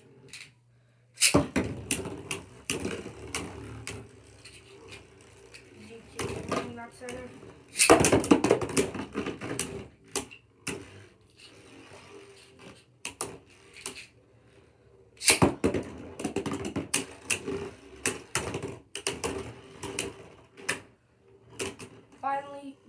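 Beyblade Burst spinning tops whirring and clashing in a plastic stadium. Rapid sharp clacks sound as the tops collide and rattle against the stadium walls, starting suddenly about a second in and coming in dense clusters.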